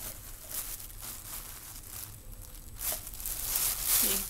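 Rustling and crinkling as art supplies (paint tubes and palette knives) are handled and sorted, with a couple of louder rustles in the last second.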